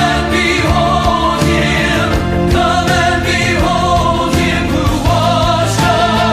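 Choir singing a gospel-style Easter anthem over orchestrated accompaniment, with drums keeping a steady beat.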